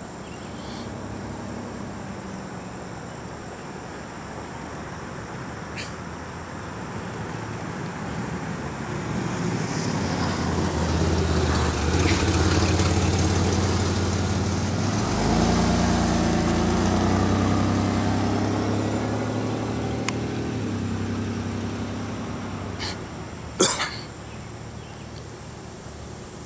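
A motor vehicle's engine passes by, rising from about nine seconds in, strongest in the middle, then fading out again. Near the end there is one sharp knock.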